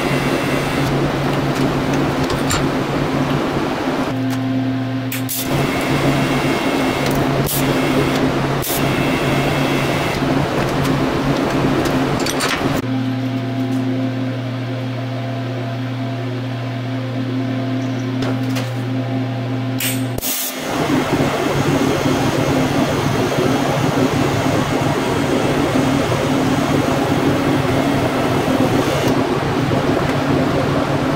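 TIG welding on stainless steel: a steady electrical hum from the welder under a continuous hiss from the arc, cut into several short takes that change abruptly. There is one quieter stretch with a clearer hum in the middle.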